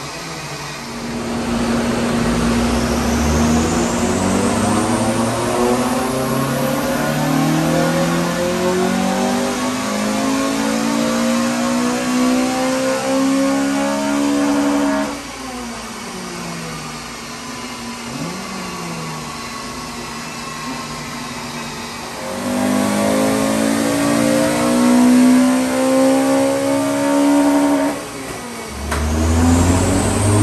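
Honda Civic Type R FN2's K20 four-cylinder engine, fitted with a four-into-one decat manifold, aftermarket exhaust and induction kit, revving up at full load on a rolling road in a long climbing pull that cuts off suddenly about halfway through. It winds down, then revs up again, dips briefly, and starts another climbing pull near the end.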